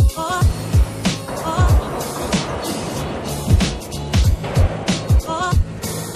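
Background music with a heavy beat: deep kick drums that slide down in pitch several times a second, sharp percussion hits over them, and a warbling synth line.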